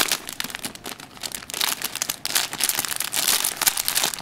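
Pink plastic bag and tissue-paper wrapping crinkling and rustling as a package is unwrapped by hand. The crinkling is uneven: loud at the start, softer for a moment, then busier again.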